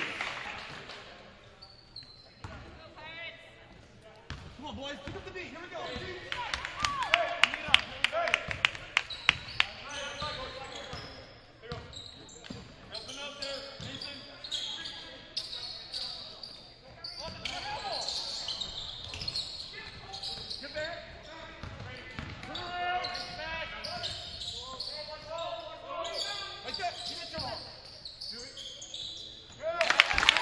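A basketball dribbled on a hardwood gym floor, a quick run of sharp bounces about two to three a second between roughly six and ten seconds in, with voices calling out across the echoing hall.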